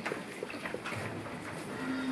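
Goats in a pen calling, with a low, drawn-out bleat about halfway through and another starting near the end, among a few light clicks.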